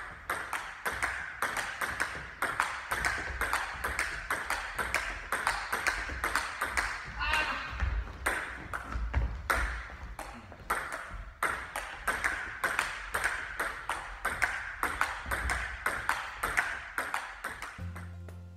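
Table tennis rally: the celluloid ball clicks off the bats and the table in a quick, steady run of several strokes a second, kept up through a long exchange.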